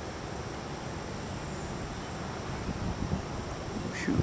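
Steady outdoor hiss with a thin, unchanging high drone of insects, and a few low rumbles of wind on the microphone in the second half.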